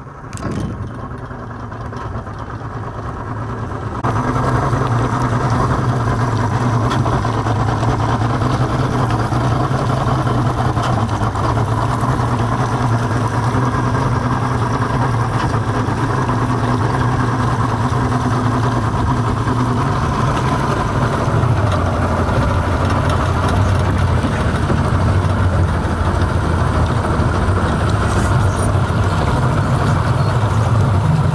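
Boat engine running steadily under way, its sound growing louder about four seconds in as it takes up power, then holding.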